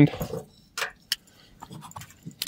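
Kubey folding knife being closed and handled, with a sharp click just after a second in and some faint handling sounds around it.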